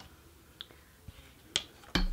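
Quiet handling on a rigid heddle loom as a shuttle is passed through the shed: a faint tick, then two sharp clicks near the end, the last with a low knock.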